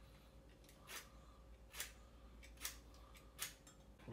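Faint scraping strokes of a vegetable peeler stripping the zest from a lemon, about four short strokes spaced roughly a second apart.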